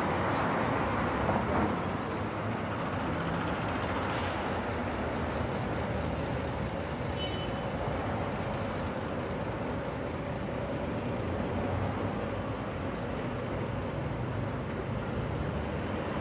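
Steady street traffic noise from passing road vehicles, with a brief high hiss about four seconds in.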